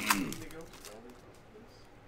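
A brief crinkle of a foil trading-card pack wrapper being pulled apart right at the start, fading within about a second into faint handling of the cards.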